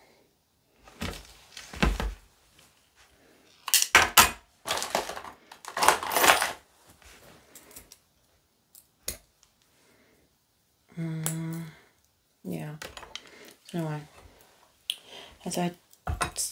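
Handling noise from work on a reborn doll's cloth body and limbs: scattered light clicks and short bursts of rustling. A short hummed voice comes about eleven seconds in, with a few murmured sounds near the end.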